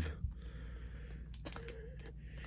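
Faint handling noise of LP record jackets in plastic outer sleeves being moved, with a couple of light clicks over a low steady background hum.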